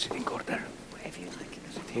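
Quiet, low talking from people on and near the stage, with a brief click at the very start.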